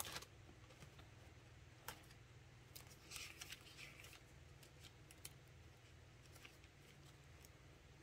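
Faint handling of paper and a plastic-wrapped pack on a desk: a few light clicks and a brief rustle about three seconds in. A low steady hum runs underneath.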